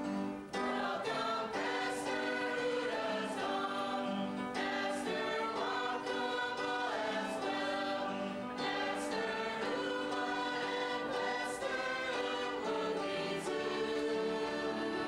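Mixed choir of men and women singing in parts, coming in about half a second in and holding long sustained notes.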